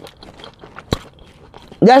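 Quiet close-up chewing of a mouthful of toasted sourdough chicken club sandwich, with small wet mouth noises and a single sharp click about halfway through.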